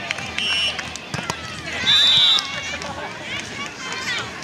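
Players' voices calling and shouting across outdoor beach volleyball courts, with a sharp referee's whistle blast about two seconds in, the loudest sound, lasting about half a second.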